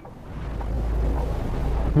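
Wind rumbling on the microphone: a low, steady roar that grows louder over the first second.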